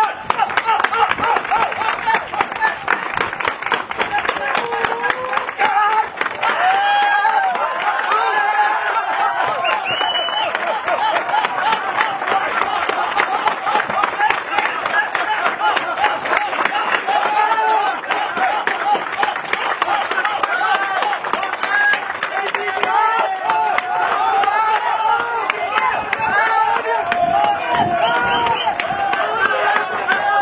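A crowd cheering and shouting in many overlapping voices, with dense clapping that keeps on steadily.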